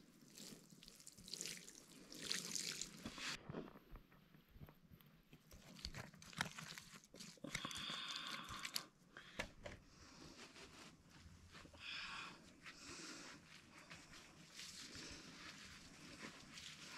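Faint water sprinkling from a watering can's rose onto soil for the first few seconds. Then a hand trowel digging in loose potting soil, with irregular crunches, scrapes and soft scuffs.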